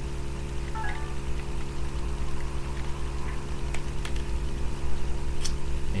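A steady low hum and hiss of background noise, with a few faint clicks of a plastic action figure's parts being handled.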